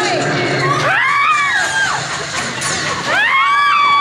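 Several riders screaming together in two waves, as on the drops of a drop-tower ride. Each wave of high screams rises and then falls, the first about a second in and the second starting about three seconds in.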